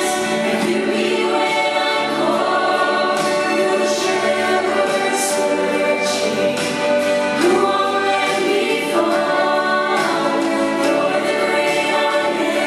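Southern gospel vocal group, men's and women's voices, singing together in harmony into microphones, amplified through the PA.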